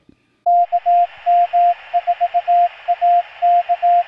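Morse code sent as a single steady tone in dots and dashes over a hiss of radio static, starting about half a second in. The dots and dashes spell the amateur radio call sign KM4ACK.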